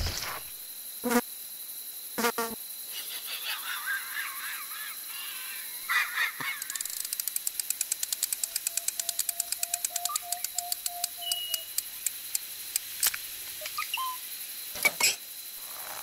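Cartoon sound effects for animated insects over a quiet nature ambience: a thump, two short knocks, a stretch of chirpy twittering, then a rapid ticking about eight times a second under a held tone, and a few sharp clicks near the end.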